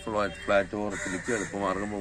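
A person speaking in continuous phrases.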